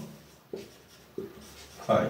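Whiteboard marker writing on a whiteboard: short strokes, two of them standing out about half a second and a second in.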